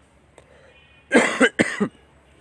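A man coughs twice in quick succession, a little over a second in.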